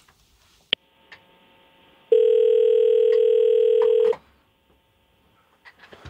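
Telephone ringback tone of an outgoing call, heard down the phone line: a click a little under a second in, then one steady two-second ring.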